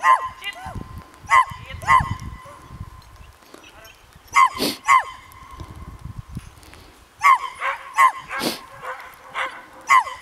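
A dog yipping in short, high-pitched barks that come in clusters, with lulls around three and six seconds in and a quicker run of yips over the last three seconds.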